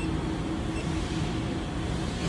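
Steady background noise, an even low hum and hiss with no distinct events, typical of machinery or ventilation running in a work area.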